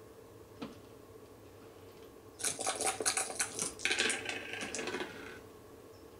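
Jibo robot's dice-roll sound effect played through its speaker: a clatter of dice rattling and tumbling, starting about two and a half seconds in and lasting about three seconds.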